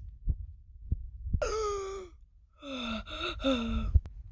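A person's voice making two drawn-out wordless sounds, the first about a second and a half in with a slightly falling pitch, the second near the end. A few soft low bumps from toys being handled come before them.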